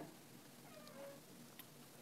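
Near silence: room tone, with one faint, short call that glides in pitch about a second in.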